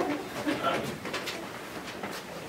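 A group of people walking along a hard-floored corridor: short voice sounds in the first second or so, and a run of light footsteps.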